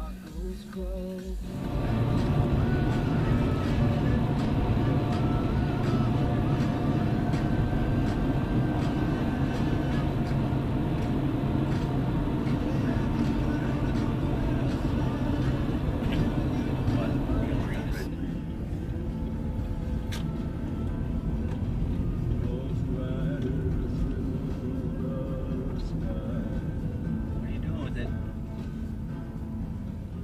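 Music with vocals playing on the car radio inside the cabin, over the steady drone of road and engine noise while driving. The sound changes about two seconds in, and gets quieter and thinner around eighteen seconds in.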